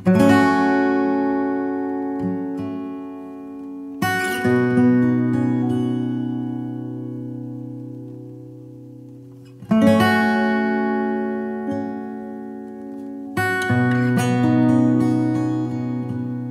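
Slow solo acoustic guitar music: four strummed chords, each left to ring and slowly fade, with a few soft single notes between them.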